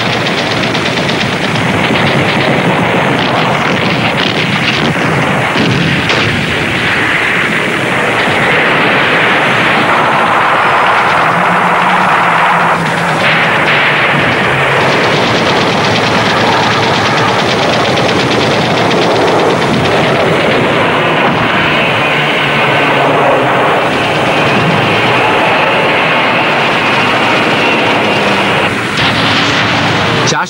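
Dense, continuous anti-aircraft gunfire from a warship under air attack: rapid machine-gun fire mixed with heavier gun reports, unbroken throughout.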